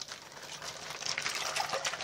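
Water sloshing as a hand moves through a sink full of soapy water and small plastic toy figurines, growing louder in the second half.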